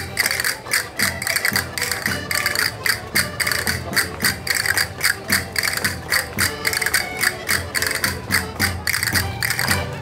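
Live Portuguese folk dance music played for a rancho folclórico, with a fast, steady percussive beat of about four sharp strikes a second under the melody. The music stops at the very end.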